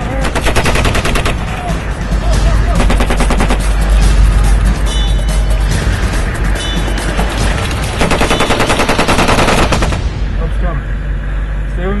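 Rapid automatic gunfire in three long bursts: one at the start, one about two and a half seconds in, and one about eight seconds in.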